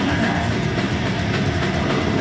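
Death metal band playing live at full volume: heavily distorted guitars and bass over fast, driving drums, dense and unbroken.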